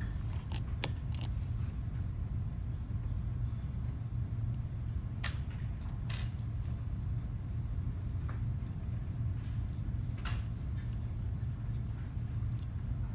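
A few scattered light clicks and taps as a stone dental cast is picked up and a brush is worked over it with separator, over a steady low hum.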